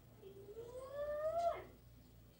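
A young child's voice making one long call that rises slowly in pitch for over a second and then drops off sharply.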